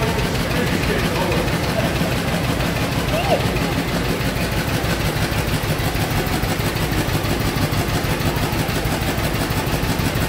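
Veteran car's single-cylinder engine, just started, idling with a steady, rapid beat.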